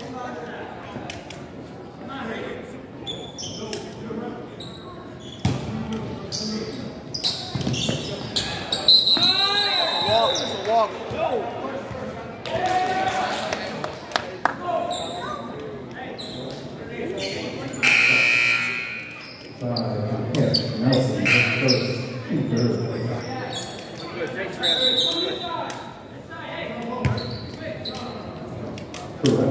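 Live basketball play on a hardwood gym floor: a ball dribbling and bouncing, with sneakers squeaking in short glides around ten seconds in. Players and spectators talk throughout, all echoing in a large gym.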